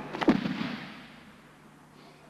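A judoka thrown onto the tatami: the body lands on the mat with a sudden thud about a third of a second in, ringing briefly in the hall and fading within a second.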